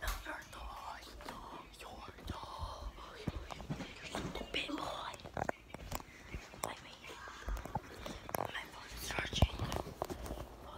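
A girl whispering close to the microphone, with a few sharp knocks here and there.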